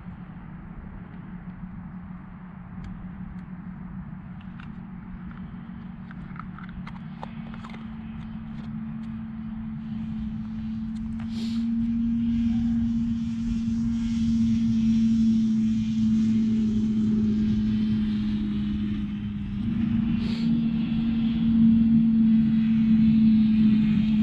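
A steady engine drone that grows louder throughout, stepping up slightly in pitch about halfway through and again near the end, with a few faint clicks over it.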